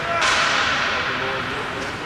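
A sharp crack of a bandy ball struck hard with a stick, followed by a long echo that dies away over about a second and a half in the big arena.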